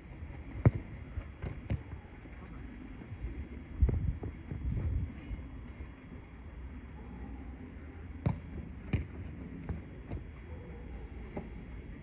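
A football being kicked on an artificial-turf pitch: a few sharp thuds, the loudest within the first second, two more soon after and two more about eight and nine seconds in, over wind rumbling on the microphone.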